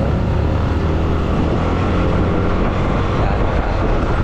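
Yamaha motor scooter accelerating from about 20 to 40 km/h: its engine running steadily under a heavy rumble of wind and road noise, picked up by a handlebar-mounted action camera.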